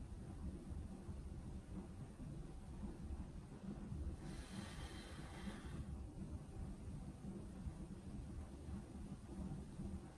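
A person's single breath out, about four seconds in and lasting about a second and a half, over a faint low steady hum.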